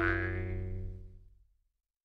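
A single struck musical sound effect: one pitched hit, rich in overtones, that rings on and fades away over about a second and a half.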